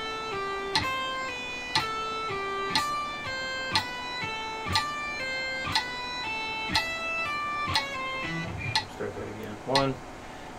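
Electric guitar playing a slow legato exercise: each picked note is followed by a pull-off to a lower note, two notes to each beat, over a click ticking once a second at 60 bpm. The pattern stops about eight seconds in, and a voice counts "one" at the very end.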